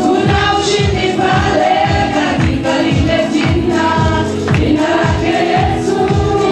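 Group singing of a gospel worship song over instrumental backing, with a steady low beat about twice a second.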